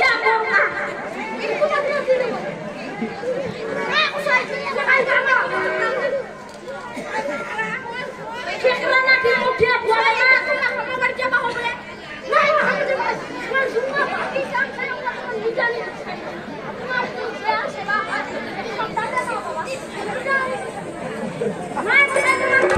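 Speech: actors' stage dialogue, spoken into overhead hanging microphones, with no other clear sound.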